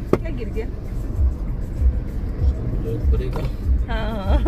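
Steady low road rumble inside a moving car's cabin, with one sharp click right at the start.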